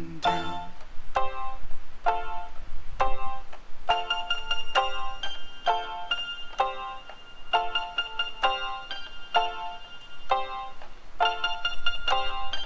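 Instrumental break of an indie pop song: chords struck on a keyboard in a steady, even rhythm, with no singing. About four seconds in, a high ringing note joins and holds over the chords.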